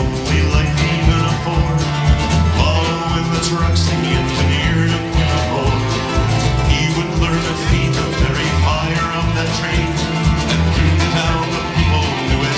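A live country-bluegrass band playing, with strummed acoustic guitars, upright bass, electric guitar and drum kit together. The bass line moves steadily note to note under the drum beat.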